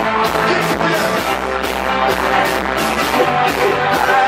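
Live band playing a rock song: a drum kit keeps a steady beat, about three hits a second, with guitar over it, loud throughout.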